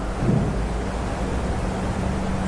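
Steady hiss with a faint low hum: the background noise of a lecture recording, with no other event.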